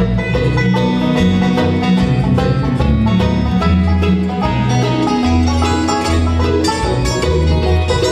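Live bluegrass instrumental break: a five-string banjo plays a fast solo over acoustic guitar rhythm, mandolin and an upright bass walking beneath.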